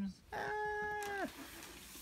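A cat meowing once: a single call about a second long that holds a steady pitch, then drops at the end.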